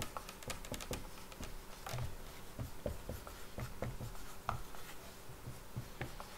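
Dry-erase marker writing quickly on a whiteboard, a steady run of short strokes and taps as one word is written over and over.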